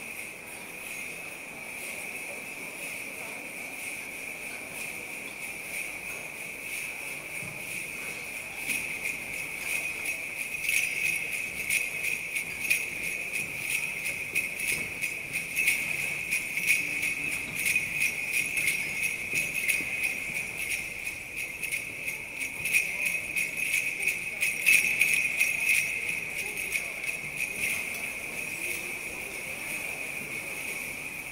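Jingle bells shaken continuously in a steady shimmering jingle, growing louder and busier about eight seconds in and easing off near the end.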